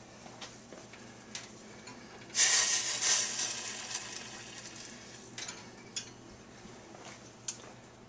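The last of the water sizzling on the hot glass saucepan as it is moved on the rack of a 500-degree oven: a sudden hiss about two and a half seconds in that fades over a couple of seconds. Light clicks of the glass pot against the wire oven rack before and after.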